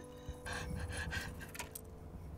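A person's short breathy exhalations, about four quick puffs in a row, followed by a faint light click.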